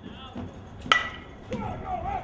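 A metal baseball bat hitting a pitched ball about a second in: one sharp crack with a brief ringing ping. Voices call out right after.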